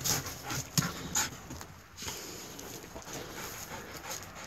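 Siberian husky panting, with a few short clicks and rustles in the first second and a half.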